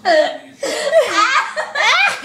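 A girl laughing hard and loudly in high-pitched peals that swoop up and down in pitch: one burst at the start, then after a short break a longer run of laughter.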